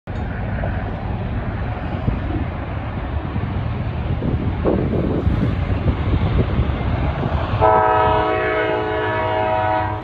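Approaching freight train led by two CSX GE diesel locomotives, a steady low rumble, then the lead locomotive's air horn sounding one long chord about three-quarters of the way in, held for over two seconds.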